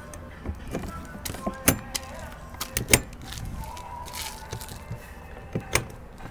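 A few scattered sharp clicks and knocks over a low steady background rumble, with a faint brief hum about two-thirds of the way through.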